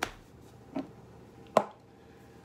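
Three sharp clicks or taps from makeup products and containers being handled, about 0.8 seconds apart, the last the loudest.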